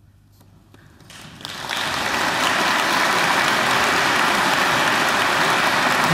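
Audience applauding in a concert hall: it begins faintly about a second in, after a brief hush at the end of the piece, and swells within a second to steady, full applause.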